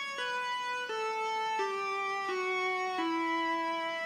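Electronic keyboard playing a slow descending scale, one held note at a time, each lasting under a second, in a sustained violin-like voice. The notes run down the scale of raga Abheri.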